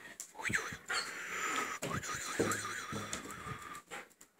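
A dog whining in a high, wavering pitch, with short rising yelps in the first half and a long quavering whine from about halfway until near the end.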